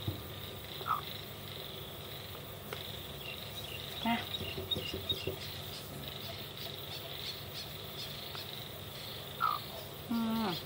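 A hen giving three short, soft calls, about a second in, around four seconds in and near the end, over a steady chirring of insects.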